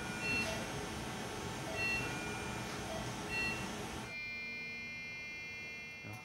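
Short electronic beeps repeating about every second and a half over steady room noise. About four seconds in, the noise drops away and a steady chord of held tones remains.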